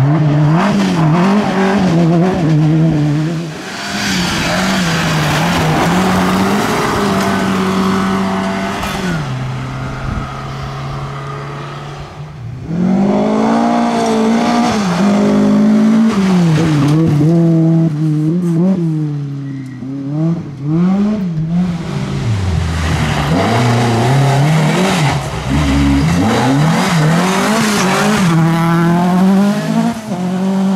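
Rally cars passing one after another on a gravel stage, their engines revving hard, rising and falling in pitch through gear changes and lifts. The sound drops away briefly between cars.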